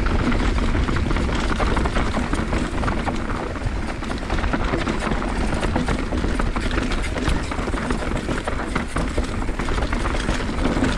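Mountain bike riding down a dry dirt trail: knobby tyres rolling over dirt and rocks, with the bike's chain and parts rattling and clicking all the while, over a low wind rumble on the handlebar-mounted action camera's microphone.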